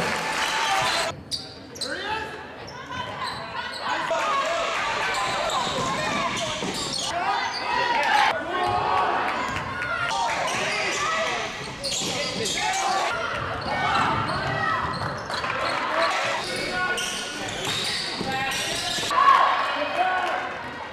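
Basketball game in a gym: a ball bouncing on the court amid a steady din of voices from the crowd and players.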